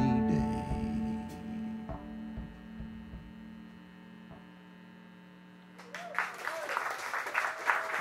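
The band's last chord rings out and slowly fades. About six seconds in, the audience starts applauding.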